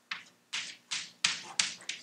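Chalk writing large letters on a blackboard: about six quick strokes, each starting with a sharp tap and trailing off in a short scrape.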